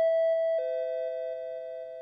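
Two-note descending chime, a higher "ding" then a lower "dong" about half a second later, both ringing on and fading slowly.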